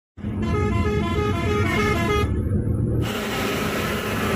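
A vehicle horn sounds a rapid run of short toots, several a second, over steady road and engine noise inside a moving car. The horn stops after about two seconds and the drive noise carries on.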